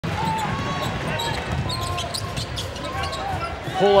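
Basketball being dribbled on a hardwood court, with short high squeaks of sneakers on the floor over a steady bed of arena noise.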